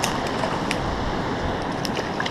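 Steady rush of a spillway creek running with a strong current, with a few faint clicks about a second apart.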